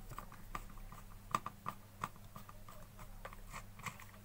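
Faint, irregular light clicks and crinkles as a new plastic iron body is handled inside a clear plastic bag, a few clicks louder about a second and a half in. A steady low hum runs underneath.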